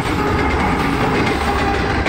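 Pakistan Railways Green Line Express passing close by: its diesel locomotive is just going past, then its passenger coaches roll by on the rails with a loud, steady rumble.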